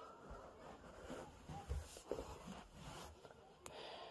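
Faint, scattered rustling and soft bumps of a hand moving over a whelping box's bedding to pick up a puppy.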